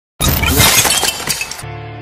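Opening of a wrestling entrance theme: a loud, crackling crash like breaking glass for about a second and a half, cut off by a piano chord that rings on and slowly fades.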